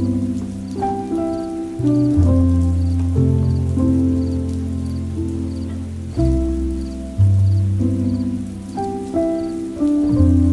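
Slow, soft piano music: low held chords with a simple melody of single notes above, each note struck and left to fade. A faint rain-like patter sits beneath it.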